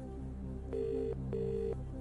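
British telephone ringing tone heard down the line: one double ring, two short buzzing tones of equal length separated by a brief gap, as the outgoing call rings at the other end. It sounds over low, steady background music.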